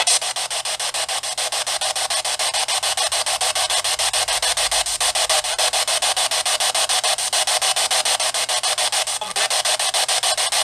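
Ghost-box radio-sweep static played through a small handheld speaker: continuous hiss chopped into rapid, even pulses, several a second, as the receiver scans stations.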